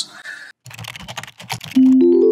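Computer keyboard typing, a quick run of key clicks lasting about a second. Near the end a mallet-like musical chime begins: the start of a logo jingle.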